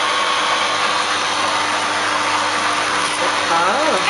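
Hurom slow juicer's electric motor running steadily with a constant hum, pressing vegetables into juice. A brief word of speech comes in near the end.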